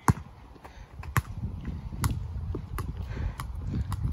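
A football being tapped and juggled with the feet on an asphalt court: about five sharp, separate ball touches, roughly one a second, over a low rumble.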